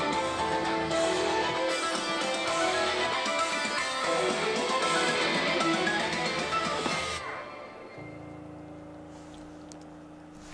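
Guitar-driven rock music played over a Tesla Model Y's speakers for its light show, ending about seven seconds in. A quieter, steady low hum follows.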